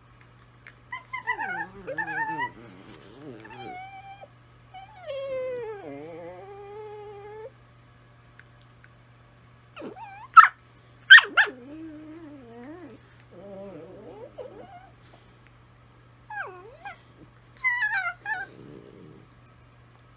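Two Italian Greyhounds singing to each other: long wavering, gliding howls and whines passed back and forth in several phrases. Two short, sharp yips about ten and eleven seconds in are the loudest sounds.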